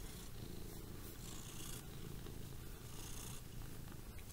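Domestic cat purring, a soft, steady low rumble from the cat held close to the microphone; a contented purr, the sign of a cat in a very good mood.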